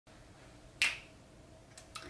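A single sharp finger snap a little under a second in, with a couple of faint clicks just before the end.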